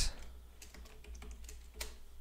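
A few soft, separate computer keyboard keystrokes as text is typed.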